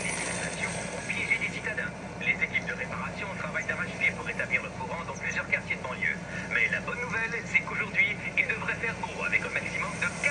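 Indistinct voice sounds, thin and muffled, played through a tablet's speaker and running on and off throughout, over a steady low hum.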